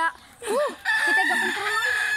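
A rooster crowing: one long, level call that starts about a second in and runs on past the end.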